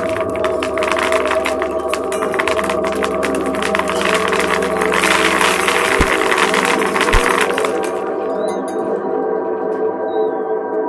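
Experimental noise music: a sustained layered drone of several steady tones, with a dense crackling, rattling noise texture over it that thins out about eight seconds in. Two short low thumps sound about six and seven seconds in.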